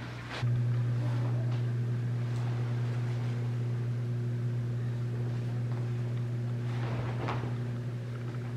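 A steady low hum with fainter overtones, stepping up in level about half a second in and then holding even, with a brief soft noise about seven seconds in.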